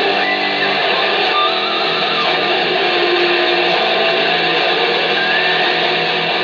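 Electric guitar played solo in a shredding lead style, dense and steady, with a couple of notes bent upward in pitch, one about a second and a half in and one near the end.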